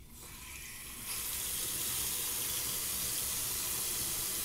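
Bathroom sink tap turned on, water running steadily into the basin. The flow builds over the first second, then holds.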